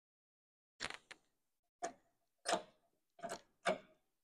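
Sharp metallic clicks and knocks, about six at uneven spacing, from steel parts being handled and set in place on a shop press: a hydraulic cylinder's rod eye, round stock and steel blocks knocking together.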